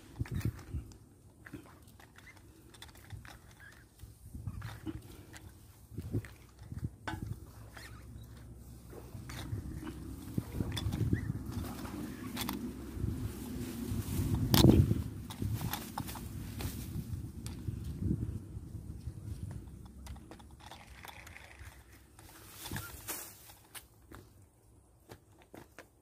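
Rustling and handling noise while a fish shot with a fishing slingshot is hauled in on the reel's line, with a low rumble and scattered knocks; one sharp knock about midway is the loudest sound.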